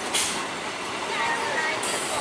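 EMU electric commuter train running past on the track: a steady rumble and rattle of coaches and wheels on the rails, with a short hiss about a quarter-second in.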